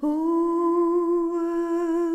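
A woman's voice humming one long, steady note, unaccompanied.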